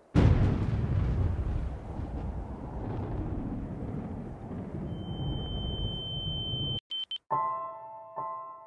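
A thunderclap breaking sharply, then a long rolling rumble that slowly fades. About five seconds in a high steady ringing tone joins it, then everything cuts off abruptly and a piano chord starts near the end.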